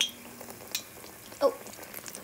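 Hot oil sizzling as a pua, a sweet batter fritter, deep-fries in a kadhai, while a perforated metal skimmer presses it down and taps against the pan twice.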